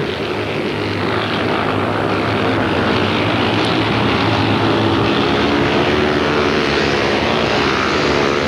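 Speedway motorcycles' single-cylinder 500 cc methanol engines running hard in a race, a steady loud drone as the bikes are powered through a bend.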